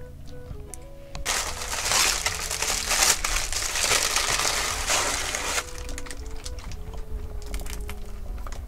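Brown paper bag rustling and crinkling loudly for about four seconds as it is opened and a pastry is pulled out, starting about a second in. Soft background music plays under it.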